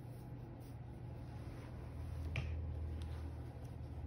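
Faint handling sounds of fingers threading a yarn tail through a sewing needle, with a few light ticks and one sharper click about two and a half seconds in, over a low steady hum.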